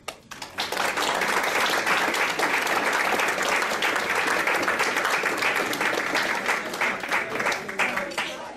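An audience applauding, the clapping rising sharply about half a second in, holding steady, and dying away near the end.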